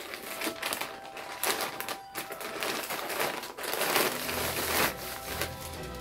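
Thin plastic mailer bag being torn open and rustled by hand as a garment is pulled out, with irregular crinkling and crackling throughout. A low steady rumble joins about four seconds in.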